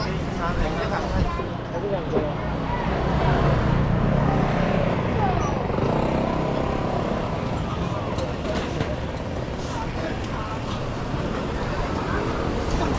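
Busy street ambience: motor scooters and other traffic running past with the chatter of passers-by. A vehicle passing close swells louder from about three to six seconds in.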